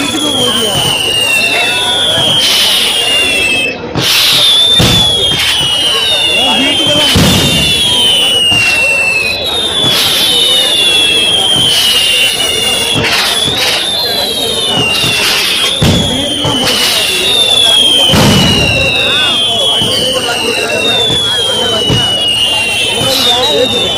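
Fireworks going off: a constant hiss of showering sparks with a string of falling whistles, one after another about every second, and several loud bangs spread through.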